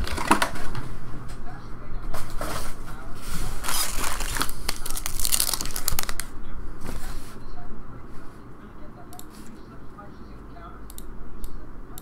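Foil-wrapped trading card packs crinkling as they are pulled from a box and stacked, in bursts of rustling over the first several seconds. Then it goes quieter, with a few light clicks and taps near the end.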